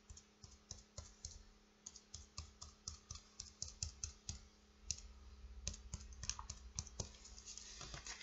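Cotton swab dabbing dots of poster paint onto a sheet of paper lying on a wooden floor: faint, irregular light taps, several a second.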